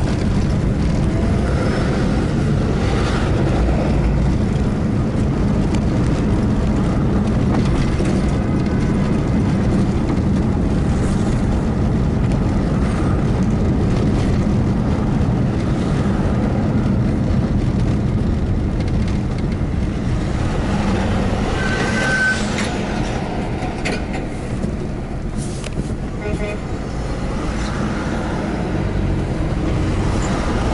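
Car driving on a city road, heard from inside the cabin: steady engine and road rumble, with a couple of brief high-pitched tones in the last third.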